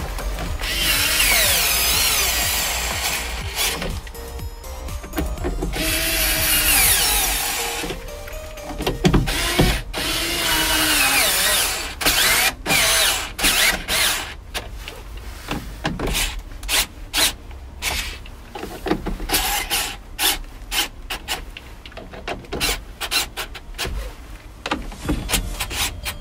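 Cordless electric screwdriver driving the screws that hold a van's rear heater blower motor in place. It makes a few runs of a couple of seconds each with a shifting whine in the first half, then many short blips of the trigger as the screws seat.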